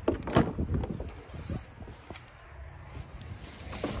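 Ram 4500 pickup's rear door handle pulled and the door latch clicking open, with a cluster of sharp clicks and knocks in the first second and a few lighter ticks after. A low wind rumble on the microphone runs underneath.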